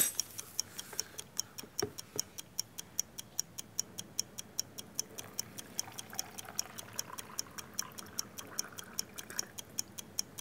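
Steady clock-like ticking, about four ticks a second. From about five and a half seconds in until just before the end, water pours from a plastic jug into a plastic cup of sugar.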